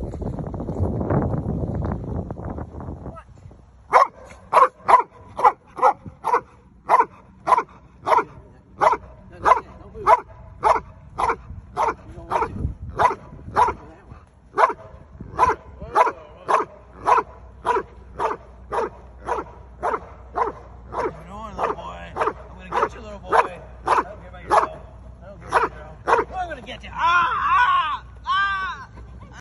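Protection-trained Belgian Malinois barking at a threatening decoy, evenly at about two barks a second from about four seconds in. The barking comes after a few seconds of loud scuffling noise, and near the end there is a higher, wavering sound.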